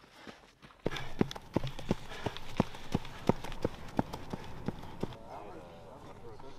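Running footsteps of soldiers in combat boots on a packed dirt road, a steady beat of about three footfalls a second that turns loud about a second in as the runners come close. Voices can be heard near the end.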